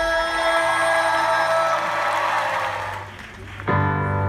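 Live band music: a held keyboard chord dies away about three seconds in, and a new keyboard chord starts sharply just before the end.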